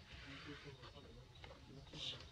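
Near silence: a faint background hiss and low rumble, with a few faint clicks.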